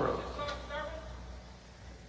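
Quiet, indistinct speech over a steady low hum.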